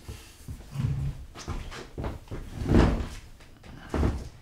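A person sitting down at a table: a chair shifting, rustling, and a few knocks, loudest about three-quarters of the way through, with another knock right at the end.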